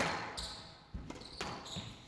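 Squash ball struck hard with a racket and hitting the court walls: a sharp crack at the start, then smaller knocks about one and one-and-a-half seconds in. Brief high squeaks of court shoes on the floor between the hits.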